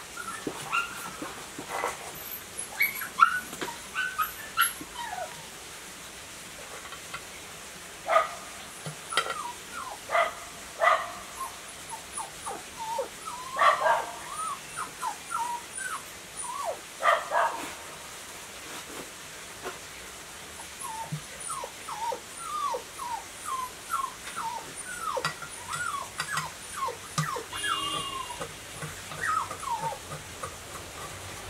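A small dog whimpering and whining, with repeated short high cries and yips at irregular intervals, the loudest in the middle stretch.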